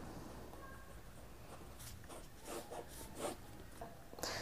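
Ballpoint pen writing on paper: faint scratching strokes as a word is written and a box drawn around it, the strokes busiest in the second half.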